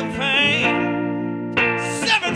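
Live blues music: a man's singing voice over a hollow-body electric guitar, with a wavering held note at the start, then steady sustained tones.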